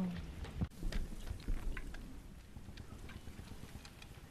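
Soft, irregular clicks and knocks over a low rumble, most of them in the first two seconds: a soldier's gear and metal canteen being handled in a war film's soundtrack.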